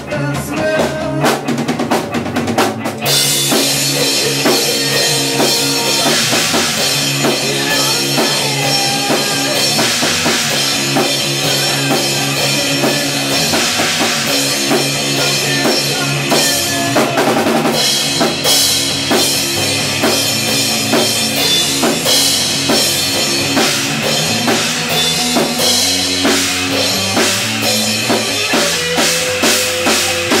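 A live rock band playing in a small room: electric guitars and a drum kit. The playing is thinner at first, then the full kit with cymbals comes in about three seconds in.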